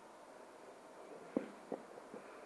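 Faint handling of a thin yeasted baghrir batter being stirred in a bowl, with two short clicks in the second half.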